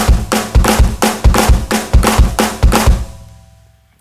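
Electronic drum kit playing a slow linear six-note lick: a flam on the snare, a bass-drum stroke, then right-left-right strokes on the toms, with quiet snare notes between the tom hits. The strokes run at an even pace until about three seconds in, and the last one rings away.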